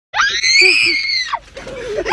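A boy's shrill scream lasting about a second, arching slightly up in pitch and then falling away. A lower voice follows near the end.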